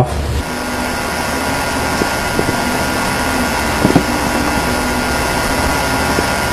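Steady background hiss with a faint hum, plus a few soft clicks about two and four seconds in.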